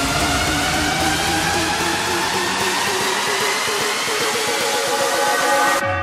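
Hardstyle electronic dance music build-up: a synth riser climbing steadily in pitch over a rushing noise sweep. The deep bass falls away about halfway through, and the whole build cuts off suddenly near the end.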